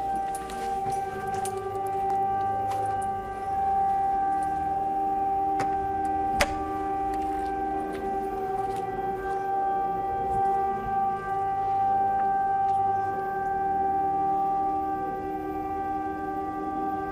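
A steady, trumpet-like drone of several held tones, the mysterious 'sky trumpets' noise said to come from the sky. A single sharp click is heard about six seconds in.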